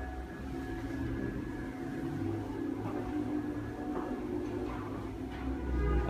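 Quiet indoor ambience: a low rumble with a faint steady hum and a few soft knocks.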